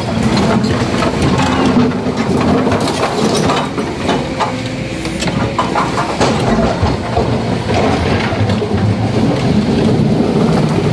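Kobelco hydraulic crawler excavator working: its diesel engine runs steadily while rock and the steel bucket knock and clatter over and over.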